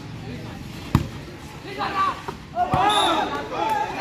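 Sharp smacks of a volleyball being hit during a rally, the loudest about a second in and another a little before three seconds, with players shouting over the second half.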